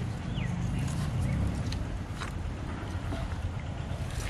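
Steady low outdoor rumble, with a few short bird chirps and a couple of light clicks.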